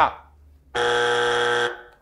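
Game-show buzzer: one steady electronic tone lasting about a second, starting a little under a second in.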